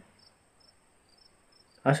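Faint insect chirping, likely crickets: short high chirps repeating a few times a second over a steady high-pitched trill. A man's reading voice comes back in near the end.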